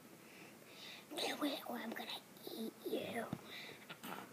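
A boy whispering and murmuring words too softly to make out, starting about a second in.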